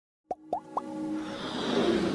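Animated logo intro sound: three quick plops, each rising in pitch, then music that swells steadily louder.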